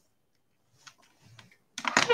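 A person moving about at a desk: a few light clicks and knocks, then a louder sudden noise near the end.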